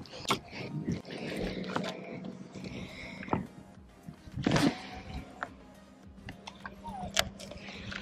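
Shimano Curado baitcasting reel in a cast and retrieve: a faint whir as line pays out, a brief louder burst about four and a half seconds in, then the reel being cranked.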